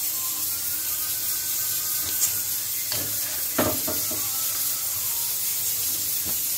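Blanched almonds frying in hot oil with a steady sizzle. A wire skimmer scrapes and knocks against the pan a few times, sharpest about two, three and three and a half seconds in, as the almonds are stirred and lifted out.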